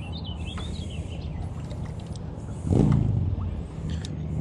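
A steady low motor hum with birds chirping over it, and a louder, short, low sound about three seconds in.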